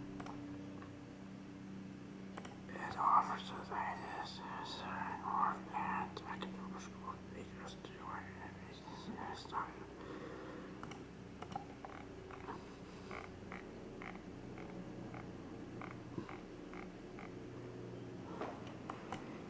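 A faint whispered voice over a steady low hum, followed in the second half by light clicks at about two a second.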